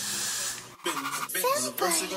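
Aerosol hairspray (Got2b Glued) hissing steadily from the can onto the wig's lace for well under a second, cutting off sharply. A voice follows.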